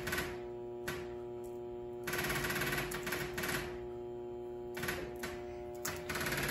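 Electric fuel pump wired straight to the car battery: a steady hum with sharp clicks as the wires touch the terminals, and two bursts of rapid ticking, a longer one about two seconds in and a short one near five seconds.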